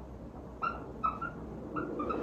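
Whiteboard marker squeaking against the board as words are written, four short high squeaks at irregular intervals.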